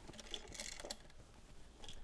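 Faint clicks and rustling of hands handling a wall-box occupancy sensor switch and its stiff wires during wiring, with a few light taps of plastic and metal.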